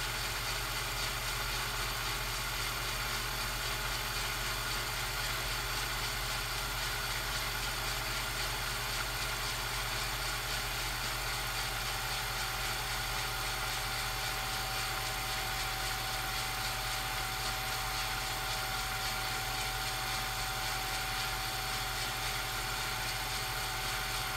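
Steady hum and hiss with no distinct events, and a faint steady tone that joins about halfway through: background noise on the soundtrack of a silent home movie, with no train sound.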